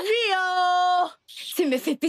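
A woman's voice holding one long, high drawn-out call for about a second, rising slightly at first and then level, before breaking off into quick talk.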